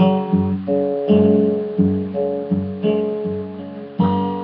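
Acoustic guitar fingerpicked: the thumb keeps a steady bass on a low G while the fingers pick a melody on the D and G strings, about two or three bass notes a second.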